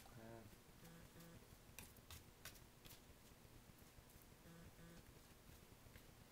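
Near silence: quiet room tone with a few faint clicks about two seconds in and soft hummed "mm-hmm" murmurs from a man.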